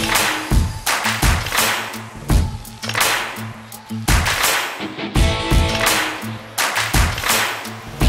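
Backing rock music: electric guitar with hard drum hits about every half second to second.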